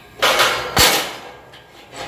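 Waterjet-cut 5052 aluminum parts being snapped off their tabs and pulled from the sheet: two metallic clanks about half a second apart, each fading with a short ring.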